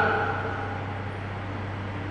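A man's voice fades out at the start, leaving a steady low electrical hum and hiss of background noise in the recording.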